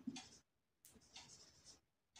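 Marker pen writing on a whiteboard: a few faint, short scratchy strokes.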